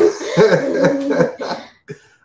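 People laughing, with a run of quick, repeated laughs that fade out near the end.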